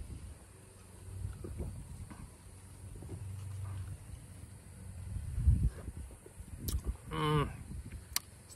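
A man drinking beer from a glass, with faint low sounds of sipping and swallowing. About seven seconds in comes a short, low appreciative "aah" after the swallow.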